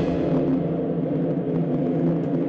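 Orchestral ballet music in a darker, lower passage of held notes, with the higher instruments dropping out for a moment.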